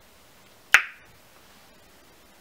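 A single sharp snap about three-quarters of a second in, fading within a quarter of a second.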